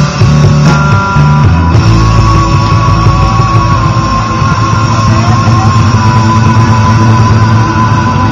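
Live rock band playing with electric guitars, bass and drums. Changing bass notes for about the first two seconds, then held notes ringing on through the rest.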